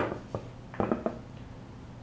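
A sharp knock as a plate is set on a bamboo cutting board, then a lighter tap and a quick cluster of small clicks about a second in as sliced nori roll pieces are handled and placed on it.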